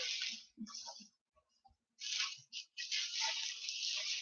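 Packaging rustling and scraping as an RC airplane kit's fuselage is handled and unwrapped. There are two short rustles in the first second, then a longer stretch of rustling from about halfway on.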